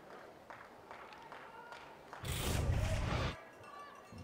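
Faint stadium ambience, then about two seconds in a sudden loud whoosh lasting about a second that cuts off sharply: the TV broadcast's replay transition sound effect.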